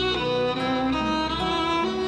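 A violin plays a melody of bowed, held notes that step from pitch to pitch, over sustained lower string notes.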